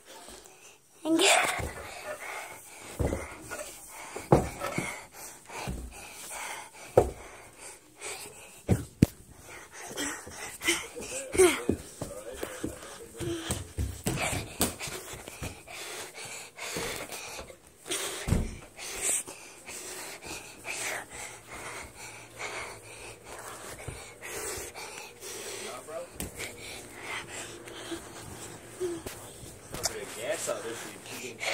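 Hard breathing and panting close to a handheld phone's microphone, out of breath from running up and down stairs, with repeated knocks and rubbing of the phone being handled.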